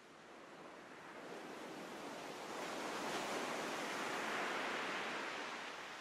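Ocean surf: a soft hiss of a wave washing in, swelling over about three seconds and easing off slightly near the end.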